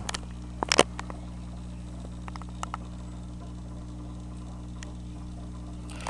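A steady low electrical hum of several even tones, with one sharp click just under a second in and a few faint ticks after it.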